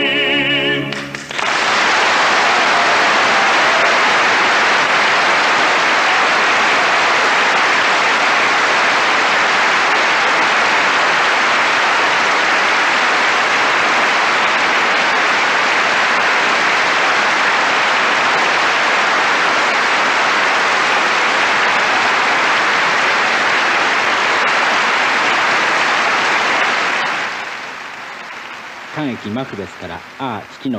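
An operatic tenor's held final note, sung with vibrato, ends about a second in. A concert-hall audience then applauds loudly and steadily, and the applause fades away near the end.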